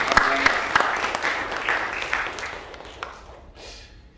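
A congregation applauding, the clapping dying away about three seconds in.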